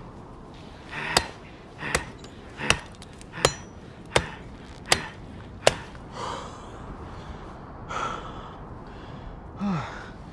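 Seven sharp chops of an axe into a green sapling's trunk, about one every three-quarters of a second, each with an effortful breath from the man swinging it; a few heavy breaths follow.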